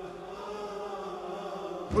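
A held, wordless chant-like vocal drone, slowly swelling in volume. Right at the end a man's voice breaks in loudly, starting a recited lament.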